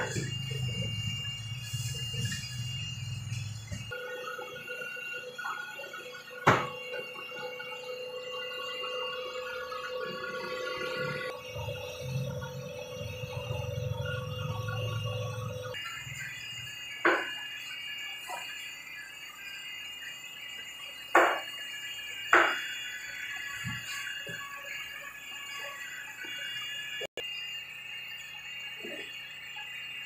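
Sharp knocks of plastic basins being handled while raw shrimp are sorted by hand: one about six seconds in and three more between about 17 and 23 seconds. Under them runs a steady background of thin tones and low hum, with faint music.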